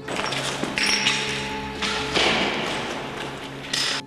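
Soft sustained music notes over a rough, noisy wash with thuds and taps, which fades toward the end.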